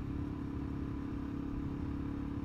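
Suzuki DRZ400SM supermoto's single-cylinder four-stroke engine running steadily at a constant cruising speed, heard from the rider's helmet as an even, unchanging drone.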